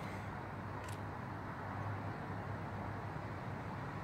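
Steady low outdoor background rumble with a constant low hum, and one faint short click about a second in from the small plastic bag of pH strips being handled.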